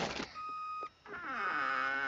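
Cartoon sound effects: a short steady beep, then a falling tone with several overtones that levels off.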